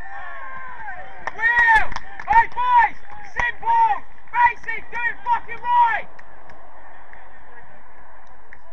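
Players shouting on the pitch: a run of short, loud, high-pitched calls lasting about five seconds, over a steady background hiss.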